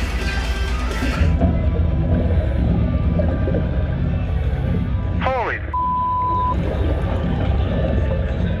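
Heavy, low-pitched death metal played through a military underwater speaker to draw in great white sharks, its dense low tones standing in for the vibrations of struggling fish. After about a second the sound turns duller, losing its top end. About five seconds in comes a short falling squeal, then a brief steady tone.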